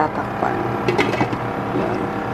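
A glass pot lid set onto a metal pan, clinking a few times in the first second or so, over the steady hum of an induction cooktop.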